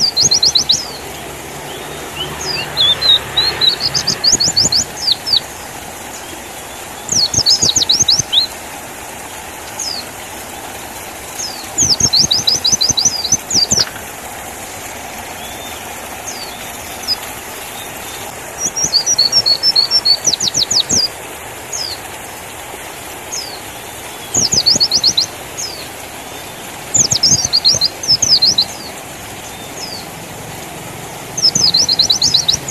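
White-eye (pleci) song: repeated bursts of very rapid, high chirping trills, each lasting a second or two and coming every few seconds, over a steady background hiss.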